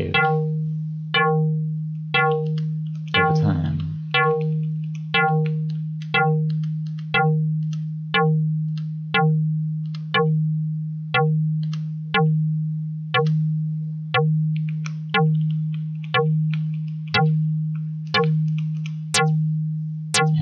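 Dirtywave M8 FM synth playing one low note re-triggered about once a second. Each strike opens with short, sharp harmonics that fade away to a plain sine wave as the modulator's level envelope decays, giving a plucked, bass-like tone. Near the end the attacks turn brighter, with more harmonics.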